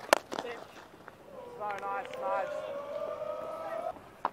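Cricket bat striking the ball once with a sharp crack. About a second later a long, held pitched sound from the crowd rises and then stays steady for over two seconds.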